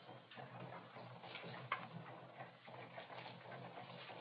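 Faint, irregular light clicks over a low steady hiss.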